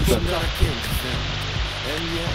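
Steady rushing noise of shallow river water, with faint voices and background music underneath.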